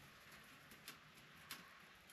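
Near silence: faint room tone with two small ticks, one just under a second in and another about halfway through.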